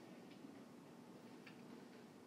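Near silence: faint outdoor background with two faint clicks, one shortly after the start and one about a second and a half in.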